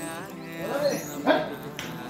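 Background song, with two short animal barks about a second in, the second one louder.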